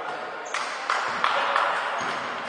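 Basketball shoes squeaking on a gym floor as players run and cut, in several short squeaks from about half a second in.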